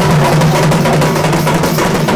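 Folk drumming: a two-headed barrel drum (dhol) and hand-held frame drums beaten in a fast, dense rhythm, with a steady ringing tone underneath.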